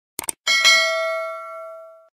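Subscribe-button animation sound effect: a quick double click, then a bright notification bell struck twice in quick succession that rings on and fades away over about a second and a half.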